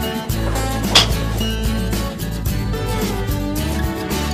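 Background guitar music, with one sharp crack about a second in: a TaylorMade M2 driver striking a golf ball.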